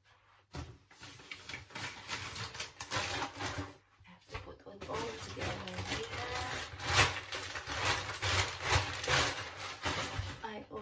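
Crinkling and rustling of a bag being handled, in many short crackles with a brief lull near the middle and the loudest crackle about seven seconds in.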